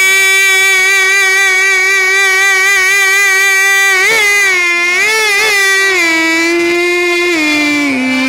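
A male Baul singer holding one long, high sung note, then ornamenting it with a few wavering turns about halfway through, and sliding down to a lower note near the end.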